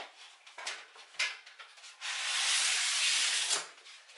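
Exo Terra styrofoam terrarium background sliding out of its cardboard box. A few light knocks and rustles of the box come first, then about two seconds in a loud scraping rub of foam against cardboard that lasts about a second and a half.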